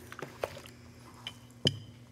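A few soft clicks and light knocks from handling fabric and a steam iron on a table. The loudest comes about one and a half seconds in, as the iron is set down on its heel, over a faint steady hum.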